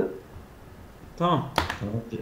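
A short, sharp click, heard as a quick cluster about three quarters of the way in, amid a man's brief speech.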